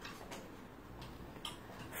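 Quiet room tone with a few faint, sparse clicks of clothes hangers being shifted on a clothes rail.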